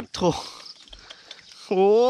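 A man's drawn-out exclamation "โอ้" (oh!), rising and then falling in pitch, near the end, with a short cry at the start; he is reacting to a catfish caught in his dip net.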